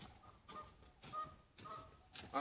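Faint, short honking calls from birds, four in all, each steady in pitch and spaced about half a second apart.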